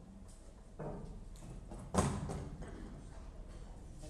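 Footsteps and a few knocks as a performer moves about the stage, the loudest a single sharp knock about two seconds in.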